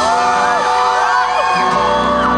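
Live band playing loudly, with a male singer's vocals and audience members whooping over the music.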